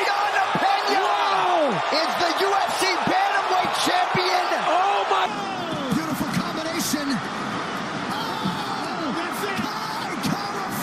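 Several excited voices yelling and screaming over each other above an arena crowd, with no clear words and with occasional sharp clicks. About five seconds in, the sound cuts abruptly to a slightly quieter mix of shouting voices.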